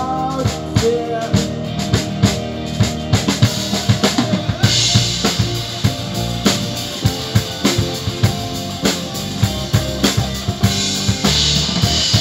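Live band playing an instrumental passage with no singing. The drum kit is loudest, keeping a steady beat of bass drum and snare, with electric guitar and keyboard behind it. The sound grows brighter and busier about five seconds in.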